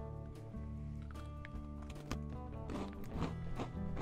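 Background music, with a few crisp crunches of a dry Qingshi calcium milk biscuit being bitten and chewed, most of them in the second half.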